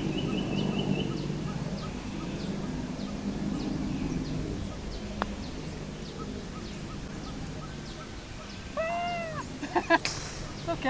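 A golf putter striking the ball once, a light click about five seconds in. Around it are a steady low hum and faint bird chirps repeating about twice a second, and near the end comes a short run of louder, arched calls.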